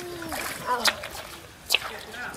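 Feet splashing while wading through a shallow muddy stream, with two sharp splashes about a second apart, the second the loudest, over running water and voices.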